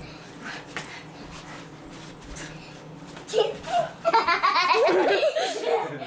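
A person laughing, loud and high-pitched, starting about three seconds in, after a quieter stretch with a few faint knocks.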